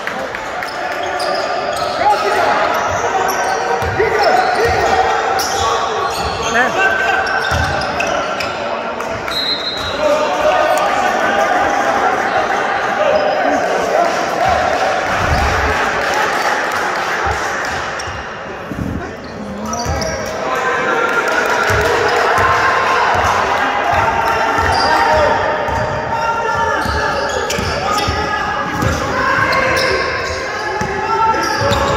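Basketball bouncing on the court in a large, echoing hall, many dull thumps through the whole stretch, under voices calling out during play.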